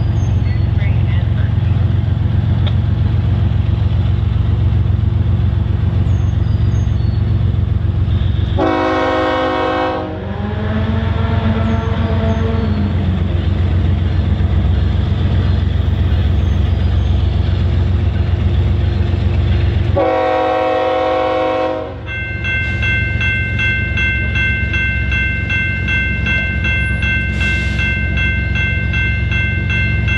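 Horn of an approaching BNSF coal train's lead locomotive, a GE ES44AC, sounding two long blasts about ten seconds apart over a steady low rumble. Shortly after the second blast, the grade-crossing warning bell starts ringing steadily as the crossing signals activate.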